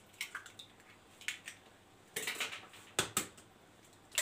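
Eggs being cracked over a plastic mixing bowl: a few sharp taps and cracks of eggshell, with a short rustling crunch in the middle as the shells are pulled apart.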